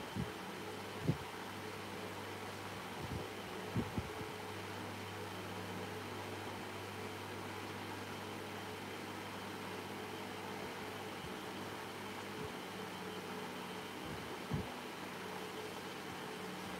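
Steady low machine hum with hiss in a workshop, broken by a few soft, low thumps as hands press and smooth wet clay on a vase, clustered near the start and once near the end.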